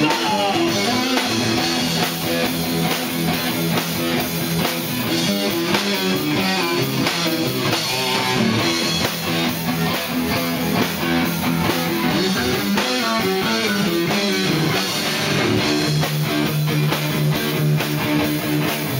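Live heavy metal band playing: electric guitars and bass riffing over a drum kit, loud and continuous.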